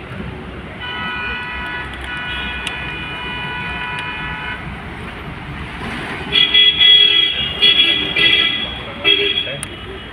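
Vehicle horns sounding in road traffic: one steady horn note held for about four seconds, then louder, broken honks for about three seconds, over a steady traffic rumble.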